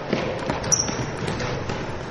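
Basketball being dribbled on a hardwood gym floor, faint against the low background noise of the gym.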